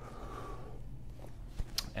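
Quiet room tone with a steady low hum and the faint rustle of a person shifting on a foam exercise mat during a stretch, with a couple of light clicks near the end.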